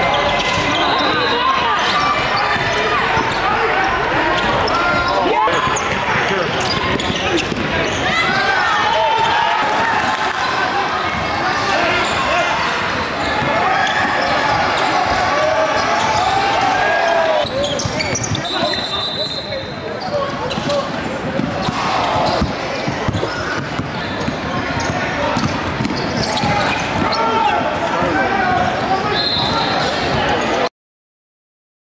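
Live game sound of a basketball game in a large gym: a ball bouncing on the hardwood court amid indistinct voices of players and spectators.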